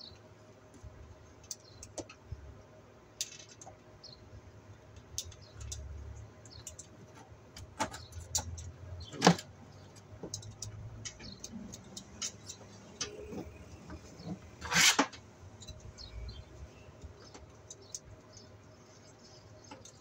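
Flexible PVC conduit being handled and cut with a hand cutter: scattered small clicks and rubs, a sharp click about nine seconds in and a louder, longer noise near fifteen seconds.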